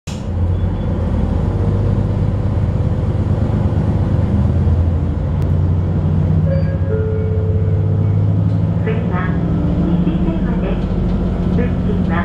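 Diesel railcar engine running under power as the train pulls away from a station: a steady low drone that steps up in pitch about halfway through, heard from inside the car.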